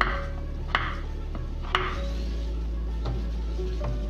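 Kitchen knife cutting through peeled raw potatoes and striking a wooden cutting board: about five sharp chops, roughly one a second.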